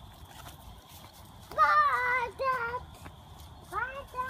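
A young child's high-pitched wordless voice: two short calls about a second and a half in, then another rising call starting near the end.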